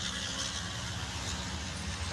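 Two MAN racing trucks' diesel engines running steadily as they pass on a wet track, with a hiss of tyre spray over the low engine drone.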